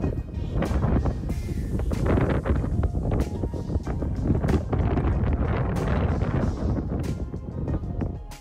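Wind on the microphone, a steady low rumble, under background music.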